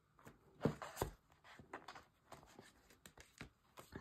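Handling noise of a cardstock mini-album folio on a wooden tabletop: a few soft knocks and light paper rustles and clicks, the loudest knock about a second in, as it is squared up and laid flat.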